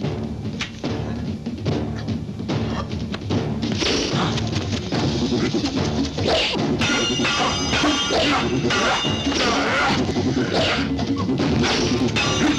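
Dramatic film score with dubbed sword-fight sound effects: a quick run of sharp metallic clashes with some ringing, busiest in the second half.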